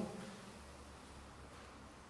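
Faint room tone: a low, even hiss.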